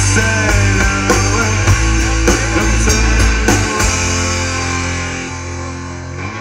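Live rock band playing: drum kit, electric guitars and bass guitar. The drums stop a little past halfway while the chord rings on and the sound grows quieter.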